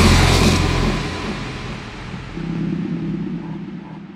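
Outro of a dubstep track: the full mix drops out and a deep bass note decays, then a low sustained synth note swells about two seconds in and fades away.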